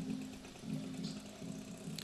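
A pause in amplified speech, leaving a faint steady low hum in the background.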